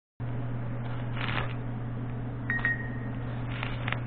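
A cheap handheld camera being handled close up: light knocks and rubbing over a steady low electrical hum, with one short high beep about two and a half seconds in and a few sharp clicks near the end.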